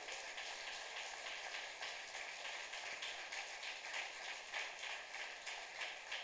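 Faint steady hiss of background noise with a light, irregular patter, in a pause with no speech.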